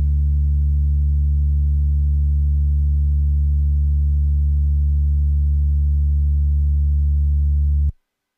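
A loud, steady, low bass tone held as one unchanging note with a few overtones, ending the song's outro; it cuts off abruptly just before the end, leaving silence.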